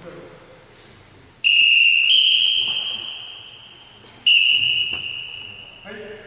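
Referee's whistle blown in two long blasts, the first about two and a half seconds with a small step up in pitch partway, the second shorter, both fading away. It signals a halt to the karate bout.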